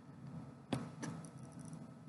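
Quiet indoor room tone with one short, sharp click about two-thirds of a second in, followed by a few fainter ticks.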